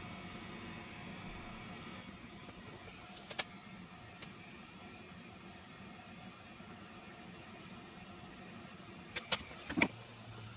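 Hot air gun running steadily, its fan blowing with a faint hum as it heats a warped plastic tuning dial. A few sharp knocks come near the end.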